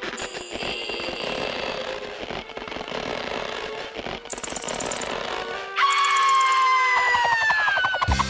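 Cartoon sound effects over music: a fast, even rattling through most of the stretch, as the snake twists the character's body. About six seconds in, a louder pitched tone comes in and slides slowly downward.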